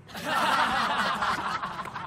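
Canned audience laughter, many people laughing together. It swells quickly just after the start and trails off over about two seconds.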